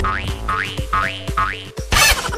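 Cartoon 'boing' sound effect repeated four times, each a short rising glide about half a second apart, over background music.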